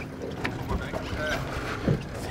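Boat motors running low as two small boats lie alongside each other, with a steady low rumble, water noise and wind on the microphone.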